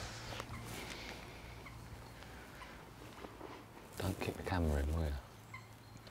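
A person's voice: one brief wordless utterance, about a second long, starting about four seconds in, over a low steady outdoor background.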